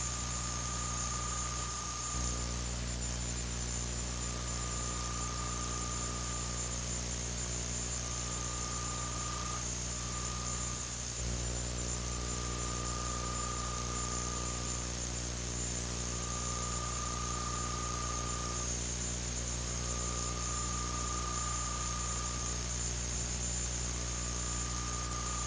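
Steady electrical hum and hiss of an old camcorder videotape recording, with a thin high whine that comes and goes every few seconds and two brief dropouts, about two and eleven seconds in. No game or crowd sounds stand out.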